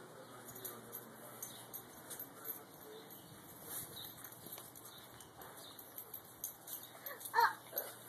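Low, quiet background with faint scattered ticks and scuffs, then a short high-pitched cry about seven seconds in.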